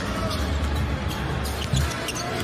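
Basketball game broadcast sound: steady arena crowd noise and music with a strong low rumble, and a basketball being dribbled on the hardwood court.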